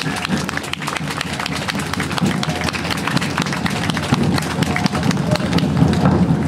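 Ensemble hand drumming on djembes and frame drums: a fast, dense pattern of strikes with deep drum tones, growing louder.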